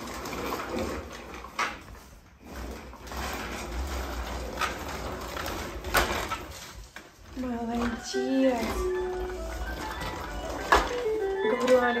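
A baby walker's plastic wheels rolling and bumping over a hardwood floor. From about seven and a half seconds in, a simple electronic tune plays from the walker's toy tray.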